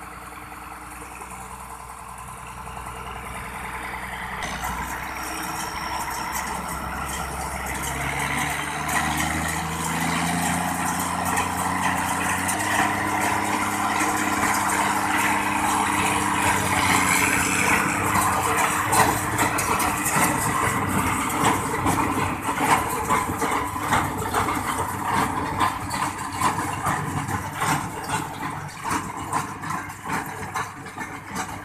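New Holland tractor engine running with a CLAAS large square baler driven behind it. The sound grows louder and the engine note climbs over the first half as the rig comes up to working speed. From about halfway on, the baler's mechanism adds a clatter of repeated sharp knocks.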